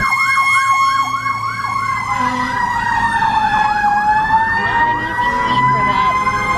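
Fire truck sirens sounding together: one in a rapid yelp of about three rising-and-falling sweeps a second, the other a steady high tone that sags in pitch about four seconds in and climbs back.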